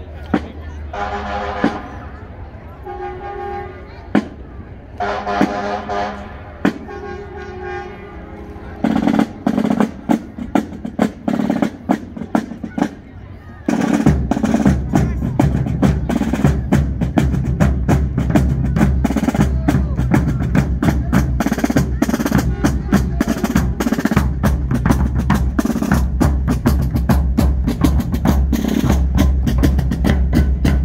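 Field drums of a colonial-style fife and drum corps marching past, beating a cadence. Scattered strokes begin about nine seconds in and turn into continuous drumming from about fourteen seconds. Before the drums, a few short held pitched tones are heard.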